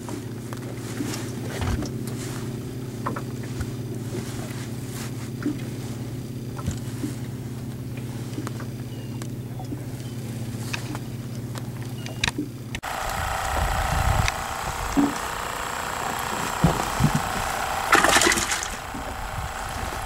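Boat engine running with a steady low hum. About thirteen seconds in it changes abruptly to a different steady drone with a higher whine and low rumble, with a few knocks on top.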